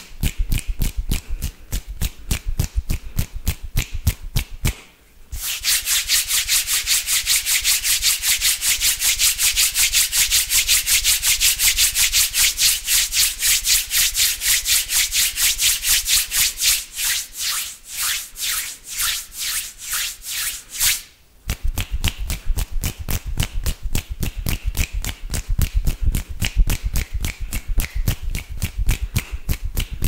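Fast hand sounds right up against a condenser microphone: for most of the middle stretch, quick palm-on-palm rubbing with several hissy strokes a second. Before and after it, rapid hand and finger movements at the mic give quick strokes with low thumps.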